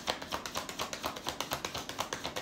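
A deck of tarot cards being shuffled by hand: a rapid, fairly even run of card clicks, several each second.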